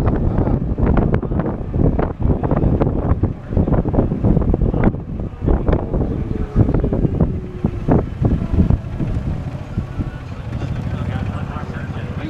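Wind buffeting the microphone of a camera riding in an open golf cart, in loud, uneven gusts. It eases to a steadier, lower rush near the end.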